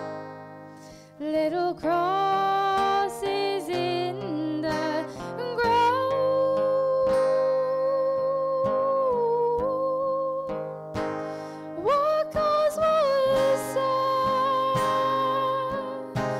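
A woman sings a slow ballad in long held notes, accompanied by acoustic guitar and piano. The voice comes in after a short lull, and a new phrase glides up near the end.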